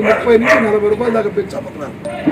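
Speech only: a man talking in a drawn-out voice.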